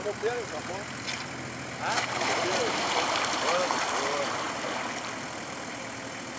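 A 4x4's engine running low and steady, then growing louder about two seconds in as the vehicle pushes down a muddy, water-filled rut, and easing off toward the end.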